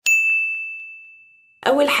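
A single bright ding sound effect: one high, clear tone struck once and fading away over about a second and a half before it is cut off.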